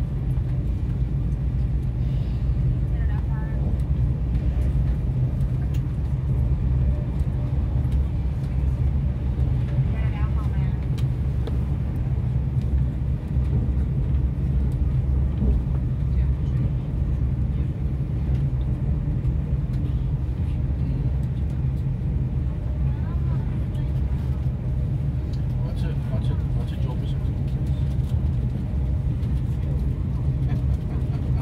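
Steady low rumble of a moving vehicle, heard from inside it at speed, with faint indistinct voices in the background.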